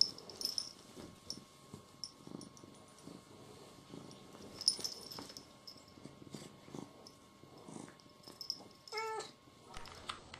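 A cat purring softly, with light clicks, and one short meow near the end.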